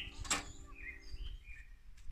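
Small birds chirping in short, scattered calls while a guitar tune fades out; a brief knock sounds about a third of a second in.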